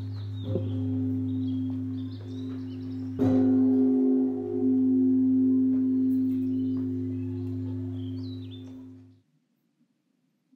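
Closing music of struck, bell-like ringing tones that hang on and sustain. A new strike comes about half a second in and a louder one about three seconds in, and the ringing dies away near the end.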